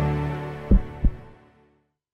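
Logo music sting: a held low chord fading out, with a double low thump near the middle like a heartbeat.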